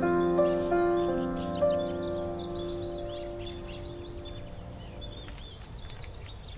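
Slow, sustained piano notes from the background score, dying away over the first four seconds or so. Under them a bird chirps steadily, about three times a second, with faint twittering that carries on after the music fades.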